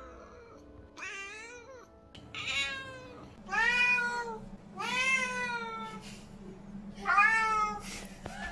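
Lynx point Siamese cat meowing: five loud, drawn-out meows, the first short and wavering, the later ones longer and more insistent.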